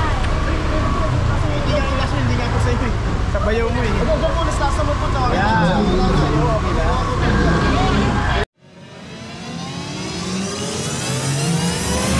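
Street sounds with a steady low rumble and several people talking, cut off suddenly about eight and a half seconds in. Then comes an intro sound effect of a car engine accelerating, its pitch climbing steadily for about four seconds.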